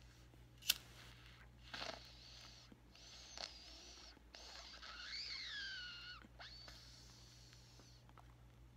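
A lighter clicks once, then a thin, wavering whistle rises and falls for about four seconds as air is drawn through a smoking pipe. A low electrical hum runs underneath.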